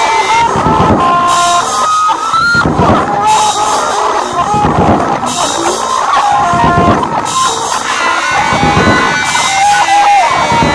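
Instrumental rock music: a lead line of held, slightly bending notes over guitar and drums.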